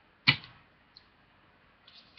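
A single sharp plastic click about a quarter of a second in, from a trading card in a hard plastic holder being handled, followed by a faint tick about a second in.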